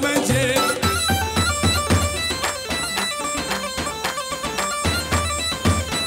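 Kurdish wedding band music for line dancing: a fast lead melody stepping from note to note over a steady drum beat.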